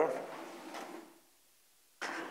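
Faint room hum under the fading end of a spoken word, then dead silence from about a second in as the audio drops out completely.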